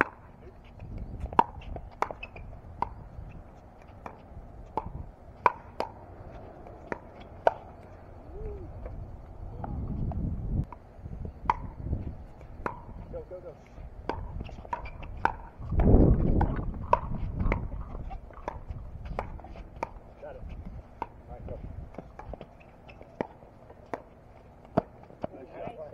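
Pickleball rally: repeated sharp pops of paddles striking a plastic pickleball, roughly one hit every half second to second. A low rumble swells twice, loudest about two-thirds of the way in.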